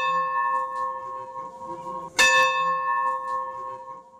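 A bell ringing. A strike just before is still ringing out, and a second strike comes about two seconds in. Each leaves a long, clear, steady tone that slowly fades.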